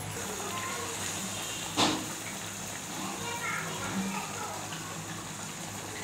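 Faint voices in the background over a steady low hum, with one sharp knock a little under two seconds in.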